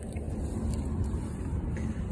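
Steady low rumble of outdoor background noise, with a few faint light ticks.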